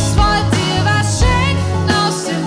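A band playing an instrumental passage of a song: bass guitar and electric guitar over synthesizer keyboards, with regular kick-drum thumps and a lead line that bends up and down in pitch.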